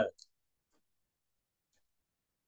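The tail of a spoken word at the very start, then near silence broken by a few faint computer keyboard key clicks as text is typed.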